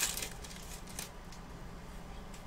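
Pokémon booster pack's foil wrapper crinkling and tearing as it is ripped open, a quick run of crackles in the first second, then quieter handling.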